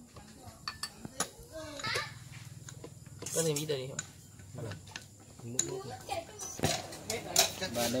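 Metal ladle and chopsticks clinking against small porcelain bowls as duck blood is ladled into them and stirred: scattered sharp clinks, several in quick succession near the end.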